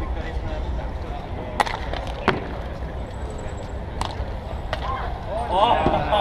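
Bike polo mallets clacking: four sharp knocks spread over a few seconds, over a steady low wind rumble on the microphone. A voice calls out near the end.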